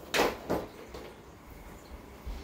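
Two short plastic knocks, about a third of a second apart, as a plastic ornament storage tub and its clear lid are handled on a hardwood floor.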